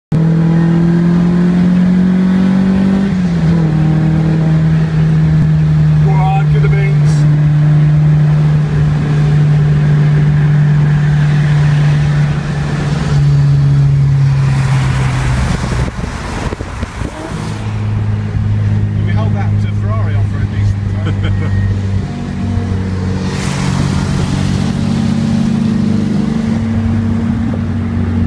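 MG Midget's Rover K-series four-cylinder engine heard from the cockpit, running at steady revs. The pitch climbs and then steps down with an upshift about three seconds in, holds, falls away around thirteen to sixteen seconds with a brief lull, and then settles at lower steady revs.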